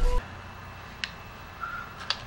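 Film soundtrack: a deep low rumble cuts off abruptly just after the start, leaving quiet room tone with a single faint click about a second in and a brief faint high tone after it.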